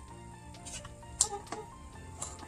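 Quiet background music with a few light clicks and taps from small parts being fitted by hand onto a drone's propeller mount, the sharpest click a little over a second in.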